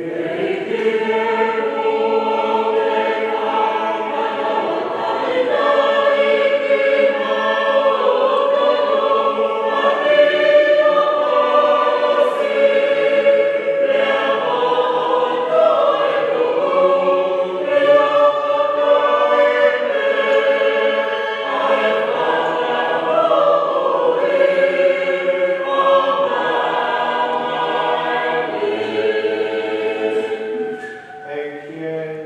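A choir singing a hymn in harmony, with several voices holding long notes, fading near the end.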